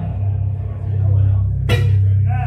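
Live band music at the end of a song: the other parts drop out and a deep bass note is held steadily, with a sharp click about one and a half seconds in.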